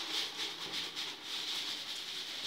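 A red plastic basket used as a sieve is shaken back and forth over a plastic basin. The mealworm-culture material rattles inside it while fine particles patter down through the slots into the basin: a steady, hissy shaking sound.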